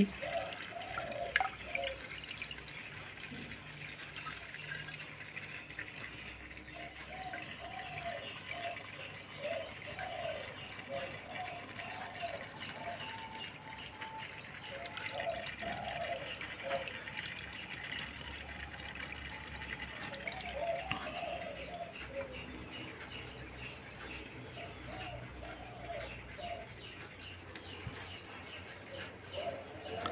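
Aquarium saltwater trickling and dripping as a swing-arm hydrometer is dipped into the tank and filled for a salinity reading. A sharp tap comes about a second and a half in.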